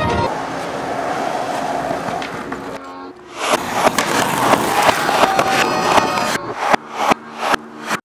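Skateboard on a concrete sidewalk: from about three seconds in, wheels rolling and the board clacking and slapping down in a dense run of sharp knocks, with several separate loud knocks in the last two seconds. Before that there is only a steady noise.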